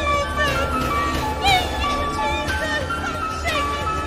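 Live worship music: an electronic keyboard holds steady sustained notes while a woman's voice sings a gliding, bending melody over it.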